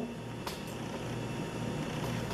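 Quiet room tone with a low steady hum and a single faint click about half a second in.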